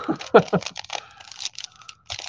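An Allen & Ginter baseball card pack wrapper being torn open and crinkled by hand: a quick run of irregular crackles and rustles, loudest just after the start.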